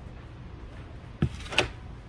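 Mercedes-Benz G-Class central door locks engaging after the keyless-entry touch sensor on the door handle is touched. Two sharp clacks about a third of a second apart, the second one louder, come a little over a second in.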